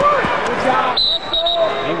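Arena crowd noise with untranscribed voices calling out, and a brief high-pitched tone, broken into a few short pulses, near the middle.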